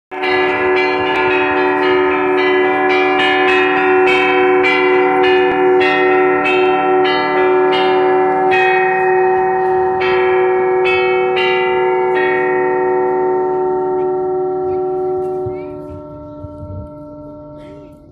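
Bell-like chiming: a quick run of struck notes over long, slowly fading ringing tones, about two or three strikes a second, thinning out after about twelve seconds and dying away over the last few seconds.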